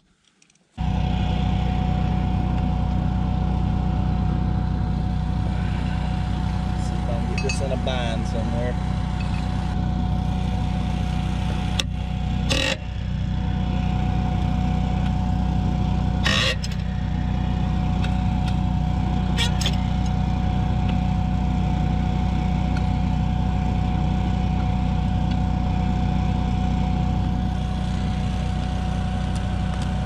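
A small engine running steadily at a constant speed, starting abruptly under a second in, with a couple of sharp metal knocks about twelve and sixteen seconds in.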